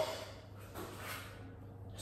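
A man breathing hard with effort between repetitions of dumbbell curls, one breath rising and falling about a second in, over a low steady hum.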